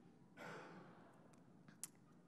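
A faint exhaled breath into the microphone about half a second in, fading away, then a few faint clicks and one sharper click near the end.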